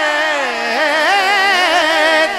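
Male naat singer holding a long wordless, ornamented line. The pitch falls over the first half-second or so, then rises and wavers in quick turns.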